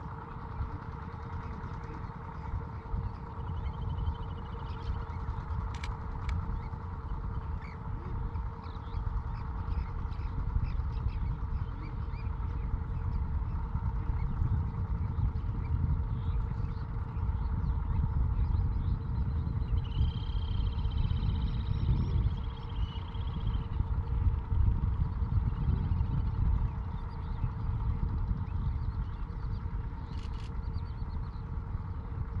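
Wind buffeting the microphone in an uneven low rumble over a steady hum. Faint bird calls sound now and then, with a longer call about twenty seconds in.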